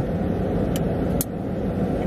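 Steady low rumble of a car's cabin while the car stands still, with two faint ticks about half a second apart near the middle.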